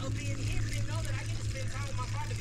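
A steady low motor-like hum, with faint speech in the background.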